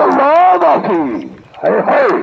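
A man shouting loud, drawn-out calls with no clear words, his voice sliding up and down in pitch: one long call, then a second shorter one near the end.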